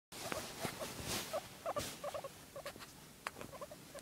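Guinea pig making short calls in quick little clusters, with fabric rustling in the first couple of seconds.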